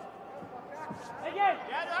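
Men shouting short, rising-and-falling calls of encouragement from the sidelines of a taekwondo bout ("Okay, let's go!"), starting about a second and a half in after a quieter stretch of arena background.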